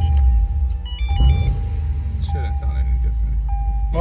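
Lexus RC F's 5.0-litre V8 idling just after being started on a freshly flashed ECU tune, a steady low rumble in the cabin. Over it, a warning chime repeats about once a second, with a few short beeps about a second in.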